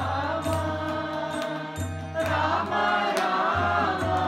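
Devotional mantra chanting sung with musical accompaniment, a low note pulsing under the voice roughly every second and a half.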